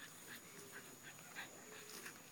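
Faint panting of a Belgian Malinois: short breaths, about two a second.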